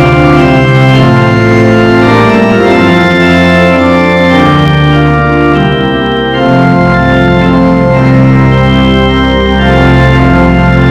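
Church organ playing a hymn in sustained, full chords that change every second or so, with a short break between phrases about six seconds in.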